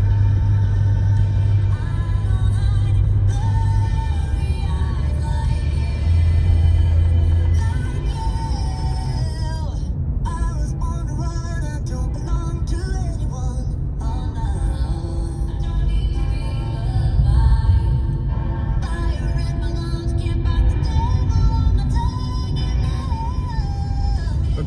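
Music with deep, sustained bass notes that shift every couple of seconds early on, and a wavering melodic line above them, over a low rumble.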